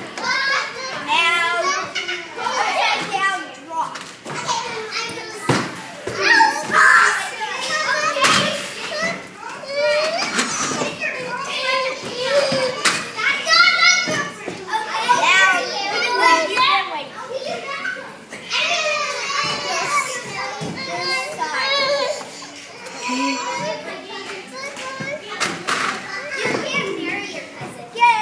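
Several children's voices shouting, laughing and chattering over one another while playing, with a few sharp knocks among them.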